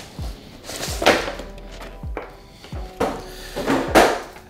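A plastic tray insert and cardboard card box being handled and unpacked: several knocks and rustles, over background music.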